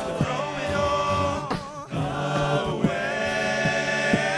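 A male a cappella group singing, two lead voices in front of a backing choir of voices, with sharp percussive hits from the vocal percussion. The sound dips briefly about halfway through, then the full group comes back in.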